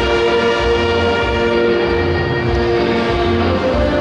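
Saxophone ensemble of alto and tenor saxophones playing held notes in chords, with a steady low beat pulsing underneath about twice a second.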